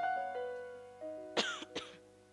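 A keyboard plays soft held notes that slowly fade. About a second and a half in there are two short coughs close together.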